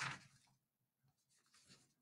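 Near silence, with a short soft noise at the very start and faint rustling of paper sheets being handled.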